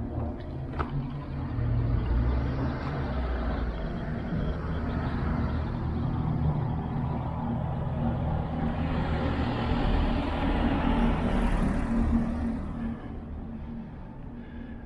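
A motor vehicle running close by on the street. A low engine rumble builds over the first couple of seconds, swells with tyre noise about ten to twelve seconds in, then fades near the end.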